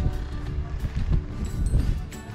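Background music with steady held notes over a low, uneven rumble.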